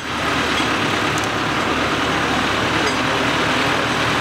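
A wheeled tractor's diesel engine running steadily under load as its front blade pushes and levels soil.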